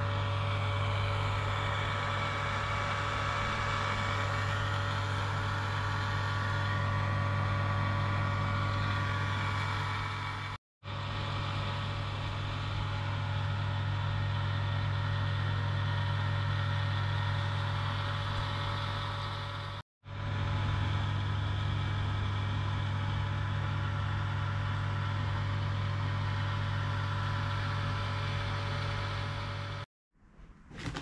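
Vacuum pump running steadily under a resin-infusion bag, giving a constant low hum. The sound breaks off for a split second twice, once about a third of the way through and once about two thirds of the way through.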